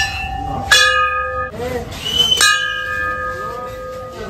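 Temple bell struck three times, near the start, under a second later and again about two seconds in. Each strike rings on with a long, slowly fading tone.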